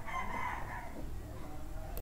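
A faint, drawn-out animal call held at a steady pitch, fading out about a second in, over a low background hum.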